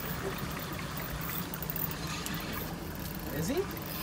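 Boat engine idling with a steady low hum, and water splashing against the hull.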